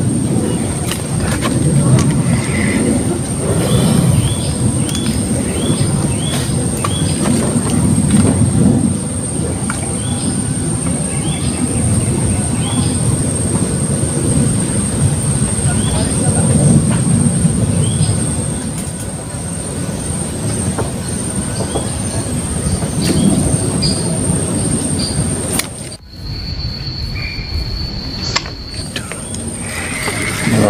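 A fluctuating low rumble with a row of short high chirps repeating about once a second and a steady high whine over it. About 26 s in the sound changes abruptly to a thinner noise with a different steady high tone.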